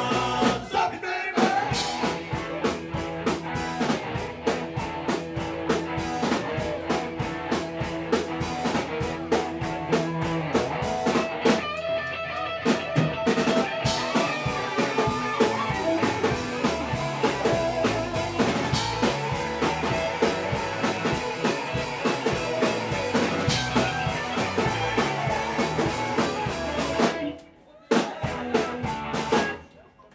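Rock band playing live: electric guitars, bass guitar and drum kit together at a steady beat. Near the end the band stops dead twice, each time only for a moment.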